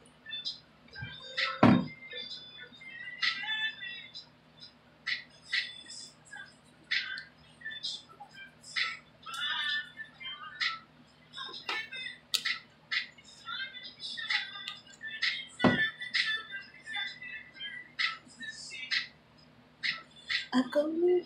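Irregular scratching, rustling and clicking of a wide-tooth comb and hands working through conditioner-coated hair close to the microphone, with two sharp knocks, one early and one near the end, over a low steady hum.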